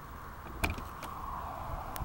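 Door handle and latch of a classic Fiat 500 clicking as the door is opened: one sharp click about two-thirds of a second in, then a couple of lighter clicks as the door swings open.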